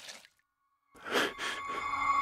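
A cartoon pig's head takes a short breath about a second in, a startled sigh or gasp. At the very start the ringing tail of a metal clang dies away.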